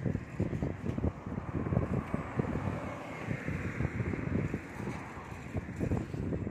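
Wind blowing across a handheld phone's microphone: an uneven low rumble that keeps rising and falling.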